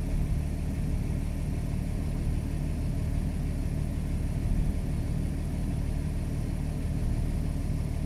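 A car engine idling steadily nearby, a low even hum with no change.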